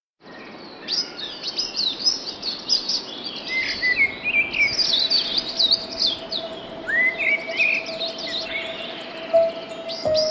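Several small birds chirping and twittering, quick overlapping calls that come thick and fast through most of the stretch, over a faint steady tone.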